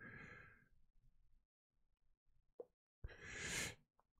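A person's breath close to the microphone: a short breathy exhale at the start, a small click a little past halfway, then a longer, louder breath that swells and cuts off near the end, with near silence in between.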